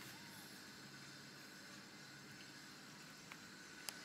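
Near silence: faint steady outdoor background hiss, with one faint short chirp about a quarter-second in and a sharp click near the end.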